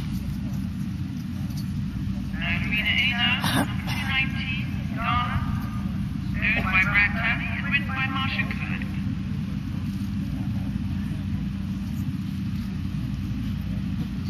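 A steady low rumble runs throughout. Over it come two stretches of indistinct, high-pitched voices, each about two seconds long, the first a couple of seconds in and the second about six seconds in.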